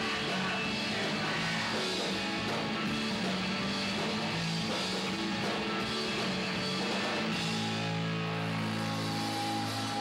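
Live punk rock trio of electric guitar, bass and drums playing loudly. About seven and a half seconds in, the beat drops away and held notes ring on.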